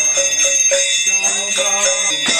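A small hand bell rung continuously in an arati, its high steady ringing over devotional kirtan singing with instruments.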